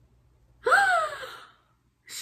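A young woman's breathy gasp of surprised delight, one short voiced cry about half a second in that jumps up in pitch and slides down, on pulling the photocard she was hoping for.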